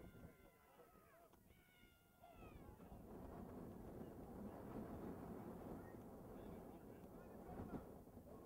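Faint, distant shouting from players on a rugby pitch: a couple of drawn-out calls falling in pitch in the first two or three seconds, then a steady low rumble of noise.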